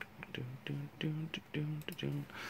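A few sharp clicks of a computer mouse, with a low voice murmuring under them.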